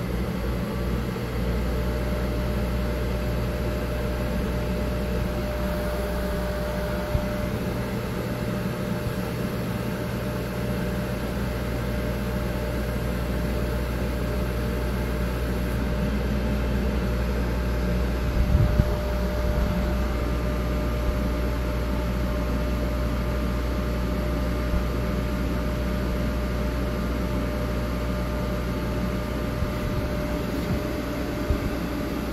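Thunder Laser CO2 laser engraver running an engrave job on wood: a steady mechanical hum from its exhaust fan and air assist, with a faint steady whine as the laser head moves. A brief knock stands out a little past the middle.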